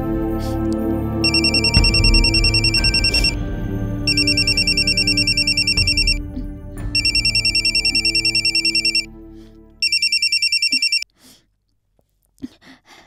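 Mobile phone ringtone: a high electronic trilling ring in bursts of about two seconds, heard four times, the last burst cut off short as the call is answered. Soft background music plays underneath and fades out just before the ringing stops.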